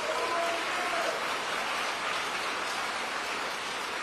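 Audience applauding steadily, with a brief cheer in the first second.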